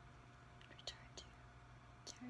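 Near silence: room tone with a steady low hum and a few faint, short ticks about a second in.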